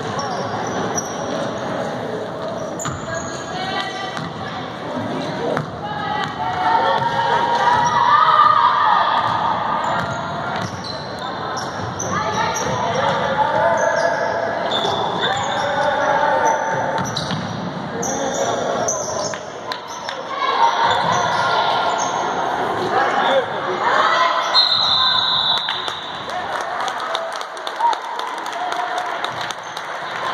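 Basketball bouncing on a hardwood gym floor during play, with short high sneaker squeaks and spectators' voices and shouts echoing in the gym.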